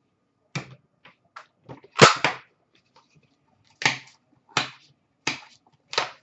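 Short knocks and clacks from hard plastic card holders and boxes being handled and set down on a counter, about eight in all, the loudest and sharpest about two seconds in.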